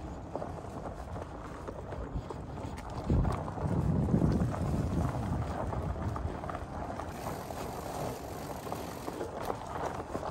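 Surly Ice Cream Truck fat bike rolling along a sandy, leaf-covered dirt trail, its wide tyres crunching over the ground, with wind buffeting the microphone. The wind rumble swells loudest about three to four and a half seconds in.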